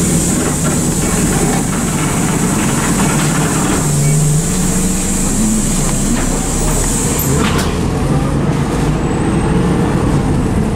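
Bus heard from inside the saloon while driving along a street: a steady rumble of the running gear with the body and fittings rattling. A steady high hiss runs through the first part and cuts off suddenly about seven and a half seconds in.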